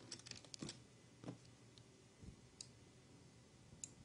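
Near silence with scattered faint clicks of a computer mouse, most of them in the first second and a half and a couple more later.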